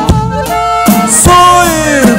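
Live amplified praise-band music: sustained chord notes with a few drum hits, and a note that slides down in pitch during the second half.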